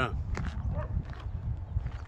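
Footsteps on a dirt and gravel track, a steady run of short crunching steps, over a low rumble of wind and handling on the microphone.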